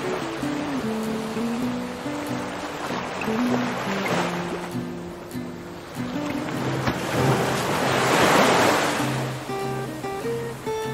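Small sea waves washing against a rocky shore, with two swells, the louder one about eight seconds in. Background acoustic guitar music plays under it.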